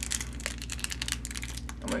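Thin plastic candy wrapper crinkling and crackling as it is pulled open by hand, a rapid run of small clicks.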